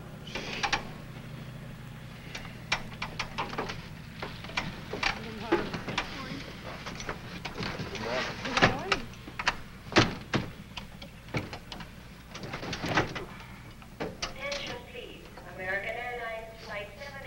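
Scattered sharp clicks and knocks of cockpit switches and levers being worked, over a low steady hum.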